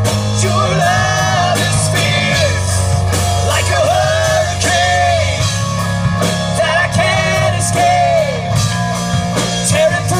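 A live rock band playing a worship song: electric guitars, bass and drum kit, with a melody line bending and holding over a steady bass.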